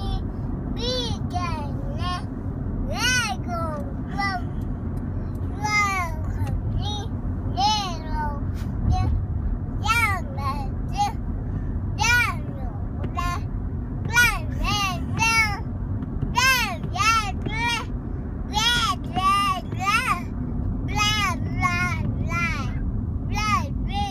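A toddler singing a made-up song in high, sing-song phrases of short, arching notes. The steady low hum of a moving car's road noise runs underneath.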